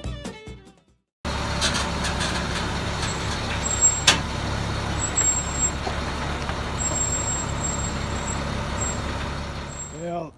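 Fiddle music fading out in the first second, then after a short gap a truck engine idling steadily, with one sharp click about four seconds in.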